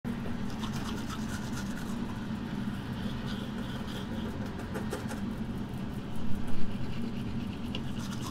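Electric toothbrushes buzzing steadily while two people brush their teeth, with scratchy brushing noise over the hum and a few louder bursts about six to seven seconds in.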